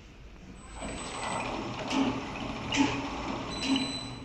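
XY-OQ-7000K two-deck napkin paper making machine running. It makes a steady mechanical clatter that swells in about a second in, with a regular thump just under once a second and a faint high whine above it.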